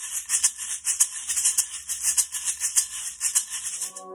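Rapid, even rattling strokes like a shaker, high and hissy.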